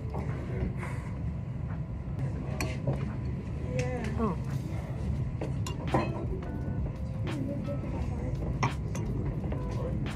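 Glass clinking a few times as a conical flask is swirled under a burette during a titration, with sharp, separate clinks. A steady low hum runs underneath.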